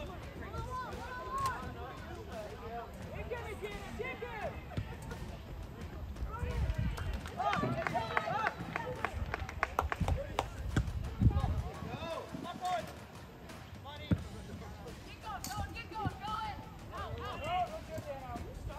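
Distant voices of players and spectators shouting and calling across an outdoor soccer pitch during play, with a few sharp knocks, the loudest about eleven seconds in.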